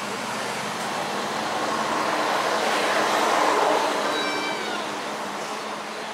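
A passing road vehicle: a broad rushing noise that swells to its loudest about three and a half seconds in, then fades away.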